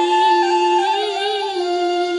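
A woman singing a slow, drawn-out phrase of a Tày folk song, her voice sliding and wavering on a held note over instrumental accompaniment with sustained notes.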